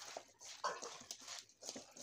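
A hand squeezing and mixing raw chicken pieces with turmeric and spices in an aluminium bowl: repeated wet squelching strokes, about two a second.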